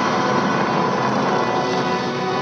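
Movie trailer soundtrack from a VHS tape, played through a TV's speaker: a loud, steady rushing sound effect mixed with orchestral music, with no speech.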